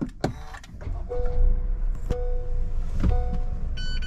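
Honda N-BOX's three-cylinder kei-car engine being started and settling into a steady idle, heard from inside the cabin. A two-note warning chime repeats about once a second over it.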